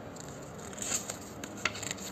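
Paper pages of a small photo book being turned by hand: short dry rustles and scrapes of paper about a second in and again near the end, over steady room noise.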